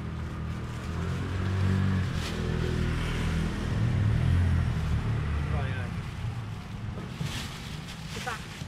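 A low motor-engine rumble, swelling twice and fading away, with faint voices behind it.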